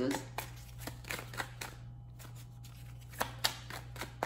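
A tarot deck being shuffled by hand, hand over hand, making a run of quick, irregular papery clicks and slaps, with two louder slaps about three seconds in.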